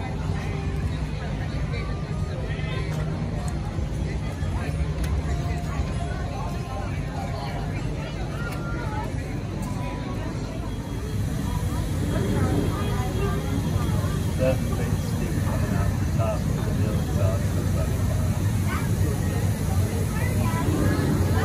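Crowd chatter with a steady low engine hum underneath, the whole getting somewhat louder about halfway through.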